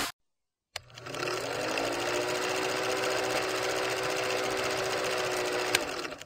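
Film projector sound effect: a rapid, even mechanical clatter over a motor tone that rises briefly as it starts about a second in, then runs steadily, with a click near the end.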